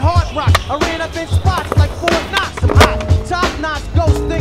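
Hip-hop track with a steady kick-drum beat, mixed with the sound of a skateboard on concrete: wheels rolling and sharp board clacks, the loudest near three seconds in.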